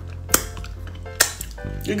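Two sharp clinks of dishes, about a second apart, over quiet steady background music.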